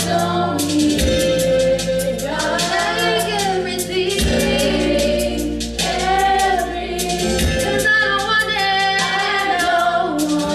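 A women's gospel vocal group singing in harmony through microphones, over an accompaniment with a steady percussive beat and sustained bass notes.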